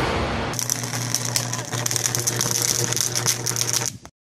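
Electrical arcing on a power line: a fast, dense crackle of sparks over a steady low buzz, starting about half a second in and cutting off suddenly at the end.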